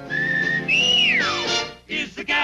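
A whistle within a jazzy TV theme song: a held note, then a jump to a higher note that glides down in a long fall, wolf-whistle style, over the band's accompaniment.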